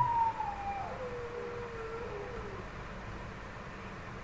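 A dog howling faintly in the background: one long falling wail in the first second, then a lower, wavering howl that sinks and fades out a little past halfway.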